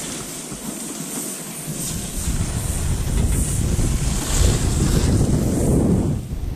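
Wind buffeting the microphone, a low rushing noise that grows louder about two seconds in.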